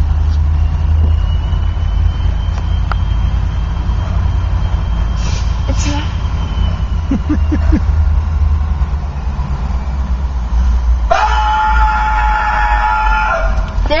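Steady low rumble, then about eleven seconds in a locomotive air horn sounds a chord of several notes, held for about two and a half seconds.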